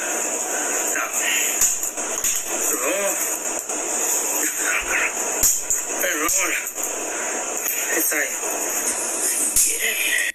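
Video audio played back with a steady hiss: a man mumbling to himself over background music, with a few sharp clicks as he handles the eggnog bottle and its plastic seal.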